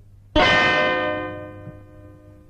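A single bell struck once about a third of a second in, ringing with several steady tones that fade away over about a second and a half.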